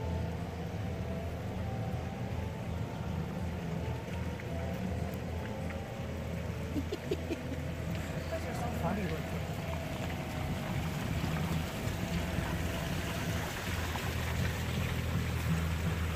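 Steady low rumble of a car engine idling, heard from inside the car.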